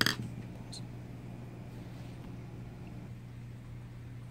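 Steady low background hum of room tone, with one faint click about three-quarters of a second in.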